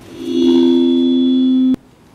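A loud steady electronic tone of two pitches a third apart. It swells in quickly, holds for about a second and a half, then cuts off abruptly with a click.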